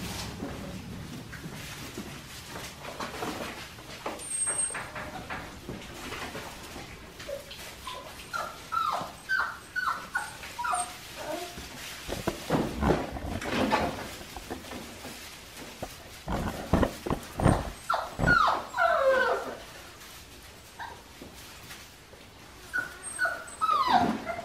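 Five-week-old Australian Shepherd puppies whining and yipping in short falling cries, in two spells around the middle and later part, with scattered thumps between.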